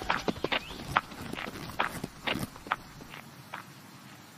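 Foley footsteps of small animated insects walking: a run of light, quick steps that grow fainter and die away a little before the end.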